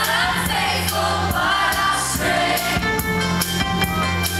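Live pop band playing: drum kit, bass and keyboards under sung vocals.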